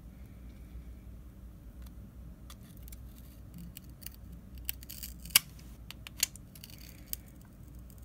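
Scattered sharp clicks and taps of small hard objects being handled during a phone repair, the loudest about five seconds in, over a low steady hum.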